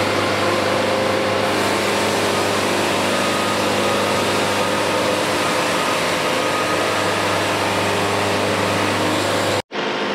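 Band sawmill running in the cut through a poplar log: a steady engine drone with the band blade's hiss through the wood, unchanging in pitch, cutting off abruptly near the end.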